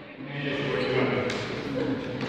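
Indistinct background chatter in a large sports hall, low and soft with no clear words, with a couple of faint knocks.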